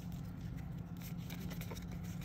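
Faint rustling and light ticks of Magic: The Gathering cards being slid through by hand, over a low steady hum.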